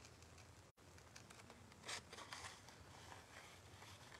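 Faint snips and rasps of large scissors closing slowly through a cardstock photo print, with a slightly louder cut about two seconds in.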